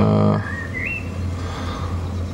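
A bird's short whistled call, gliding upward with a wavering end, over a steady low hum.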